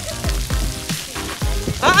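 Splash pad water spraying and splattering onto wet concrete: a steady hiss.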